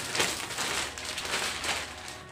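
Clear plastic wrapping being pulled off a roll of fabric and crumpled by hand: an irregular crinkling rustle.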